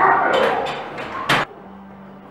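Men's short, bark-like shouts during a heavy barbell squat attempt, then a single sharp crack just past halfway, after which it drops to a quieter background with a faint steady hum.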